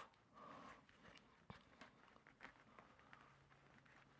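Near silence, with a few faint short crackles from a cut bagel being gently pulled apart by hand.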